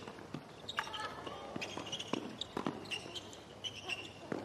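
Tennis ball struck back and forth by racquets in a quick doubles rally on a hard court: a string of sharp hits about half a second apart.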